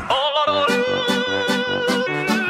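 Hardstyle dance music with the kick drum out: a long held note over low chords pulsing about four times a second.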